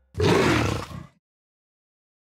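A big cat's roar-like growl, the sound sting of the Jaguar brand logo: one loud, rough roar about a second long that cuts off abruptly.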